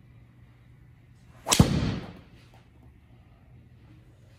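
Driver striking a golf ball: one sharp crack about a second and a half in, with a short noisy tail that fades within about half a second.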